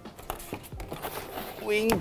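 Cardboard packaging and plastic bags rustling and crinkling as parts are rummaged out of a shipping box, with small scattered knocks.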